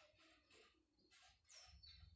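Near silence with faint outdoor birdsong: a few soft chirps and one clear downward-sliding chirp near the end. A faint low rumble comes in near the end.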